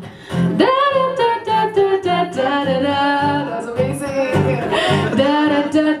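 Live band music: high, wordless 'da-da' sung phrases in a call-and-response sing-along, over a strummed guitar and keyboard. A voice swoops upward shortly after the start.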